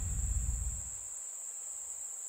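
A steady high-pitched ringing tone, with a low rumble dying away during the first second.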